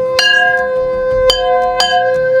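A conch shell blown in one long, steady note while a bell is struck three times, about a quarter second in, just past one second and near the end, each strike left ringing.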